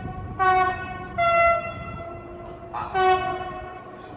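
Train horn sounding three short blasts, the second a little lower in pitch and the third about two seconds later.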